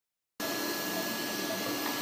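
Steady machine whir with a thin, high, constant whine, starting a moment in after a brief silence.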